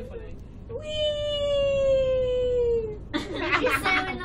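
A girl's long, high, drawn-out whine, slowly falling in pitch over about two seconds, a mock-scared cry as the cable car starts down. A short burst of voices follows near the end.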